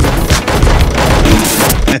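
Loud, dense crashing noise over music in a cartoon soundtrack, cutting off suddenly at the end.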